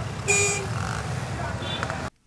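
Busy road traffic, with a short vehicle horn toot about a quarter second in, then steady traffic noise.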